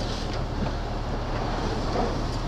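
An articulated lorry's diesel engine running with a steady low drone, heard from inside the cab as the truck rolls slowly through a turn.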